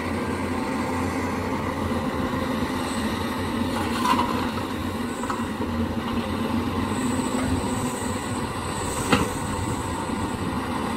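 Heavy diesel machinery, an excavator and dump trucks, running steadily at an earthworks site, with two sharp metallic clanks, one about four seconds in and a louder one about nine seconds in.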